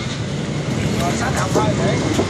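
Steady street traffic noise dominated by motor scooter engines, a continuous low rumble, with a voice speaking indistinctly about a second in.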